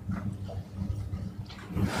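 A faint, distant voice from the lecture-hall audience answering a question, over a low steady room hum.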